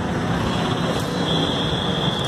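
Steady street traffic noise, with a thin high steady tone running through the second half.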